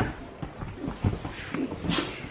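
A dog whimpering softly, a few short whines, with a sharp knock near the end.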